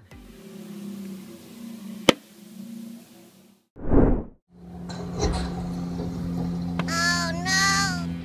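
A short whoosh transition sound effect about four seconds in, the loudest sound. It sits between two stretches of steady low engine-like hum, with a single sharp click before it and a high wavering pitched sound near the end.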